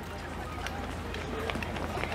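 Outdoor ambience: faint voices of people talking over a steady low rumble.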